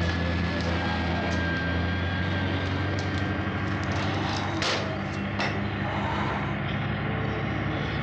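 A vehicle engine running steadily with a low, even hum, with a few short sharp knocks about halfway through.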